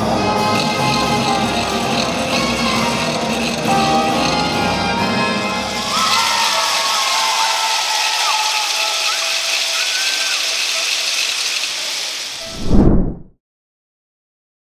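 Marinera music playing, ending about six seconds in, followed by several seconds of crowd applause and cheering with shouts. Near the end a short loud low whoosh, then the sound cuts off.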